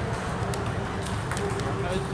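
Table tennis balls clicking off tables and paddles: a few sharp, separate ticks, about half a second, a second and a second and a half in, over people talking.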